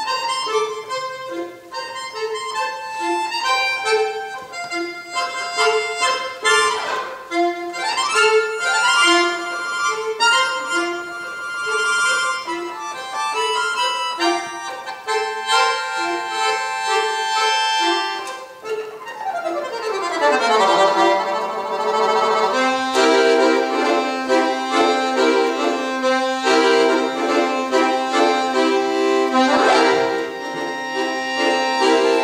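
Piano accordion playing a contemporary solo piece: short repeated low notes in an uneven rhythm with upward sweeps over them, then a long downward slide about two-thirds of the way through, followed by a held low note under pulsing repeated chords.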